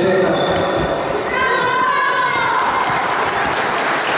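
Voices echoing in a large sports hall. A high voice calls out about a second and a half in, and crowd noise with clapping builds in the second half.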